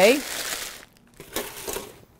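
Parchment paper being crumpled and gathered up: a rustling crinkle through the first second, then two fainter rustles.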